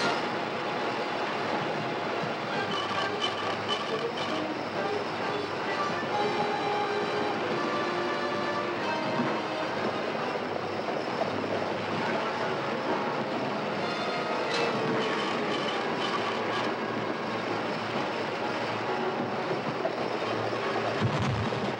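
Covered wagon's wheels rumbling and rattling at speed, with a team of horses galloping, under film score music.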